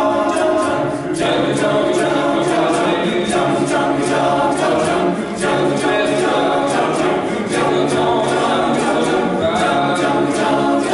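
Men's choir singing a cappella in several parts: held chords that change every couple of seconds.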